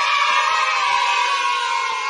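Crowd-cheering sound effect: many voices cheering together in one burst, slowly fading toward the end.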